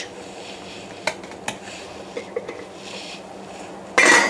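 A few light clinks of kitchen utensils and pans, the clearest two about a second and a second and a half in, over the soft steady hiss of a pan of marmalade simmering.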